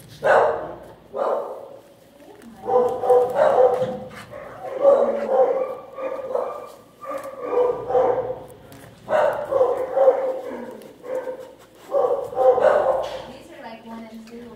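Dog barking in a kennel: drawn-out, pitched barks that come again and again, about one every second or so.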